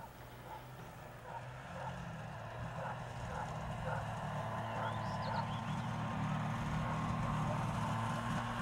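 Snowmobile engine running steadily, its hum growing louder as the machine approaches through brush.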